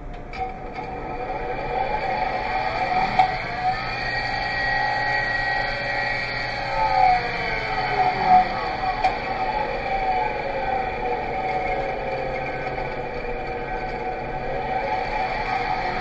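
Electric motor spinning a large aluminum disk, whining steadily with several tones that slide down and back up while a magnet is held against the disk as an eddy current brake. A switch clicks about half a second in.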